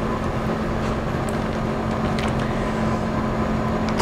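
Steady low hum of commercial kitchen ventilation or equipment running, with a couple of faint taps as butter is cut on a board.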